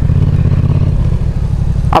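Yamaha XSR700's parallel-twin engine running steadily as the bike rides along, heard as a heavy low rumble mixed with wind on the helmet-mounted microphone.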